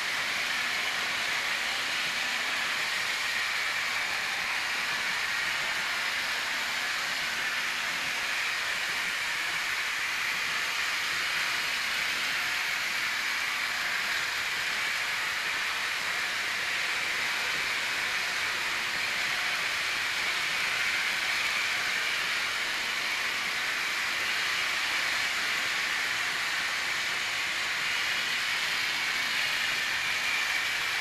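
Trix Express model trains running on the layout's metal track: a steady whirring hiss that does not let up.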